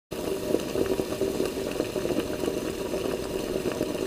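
Steady heavy rain falling, an even hiss with scattered ticks of individual drops.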